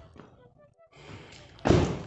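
A car door of a Volkswagen Golf Mk4 slamming shut: one loud, short thump about one and a half seconds in, after a moment of faint shuffling.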